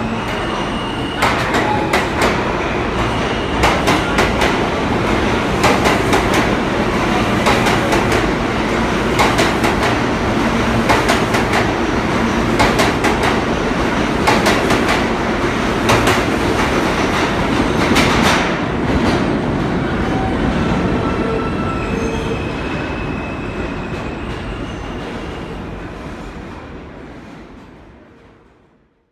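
New York City subway train of R160-type cars pulling out of an underground station, with a steady rumble and repeated sharp wheel clicks over the rail joints. The sound fades gradually over the last several seconds as the last cars leave the platform.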